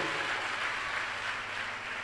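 Congregation in a large hall applauding softly, the sound slowly fading.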